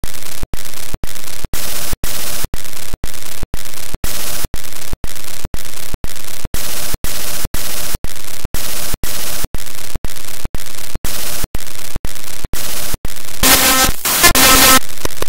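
Loud static-like hiss pulsing about twice a second, each burst cut off by a brief silence. Near the end a louder sound with several pitched tones comes in.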